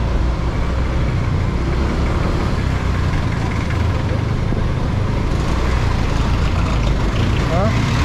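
Small motorcycle's engine running steadily with road and traffic noise as it rides in slow city traffic among jeepneys and a truck, a constant low drone throughout.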